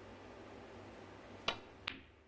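Snooker shot: the cue tip strikes the cue ball with a sharp click, and the cue ball clicks against an object ball under half a second later.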